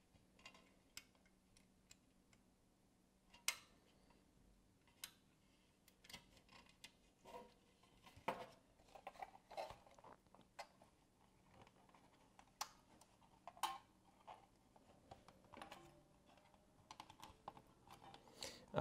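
Hands handling a wire and a small steel spring terminal on the Philips EE2000 kit's plastic chassis: scattered small clicks and light rustles at irregular intervals over near silence.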